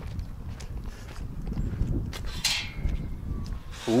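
Footsteps on dry dirt and gravel with a low rumble of wind on the microphone, and one brief scrape a little past the middle.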